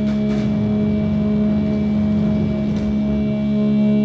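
Heavy rock band playing live, holding one sustained droning note through the amplifiers, with a few cymbal crashes and washes over it, one at the start and another near the end.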